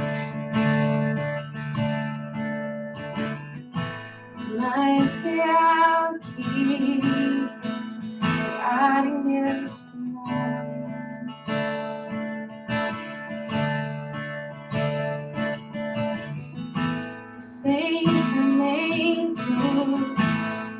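A woman singing a slow worship song to her own strummed acoustic guitar. The guitar strums steadily throughout; her voice comes in about four seconds in, drops back for a stretch in the middle, and returns near the end.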